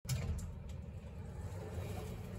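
Steady low rumble of outdoor ambience picked up by a handheld phone while walking, with a few faint light ticks.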